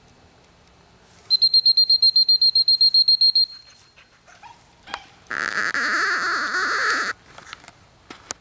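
Attention-getting calls from a retriever trainer's helper as a mark is thrown for a young dog: a rapid high trilling whistle for about two seconds, then, after a faint click, a loud harsh call lasting nearly two seconds.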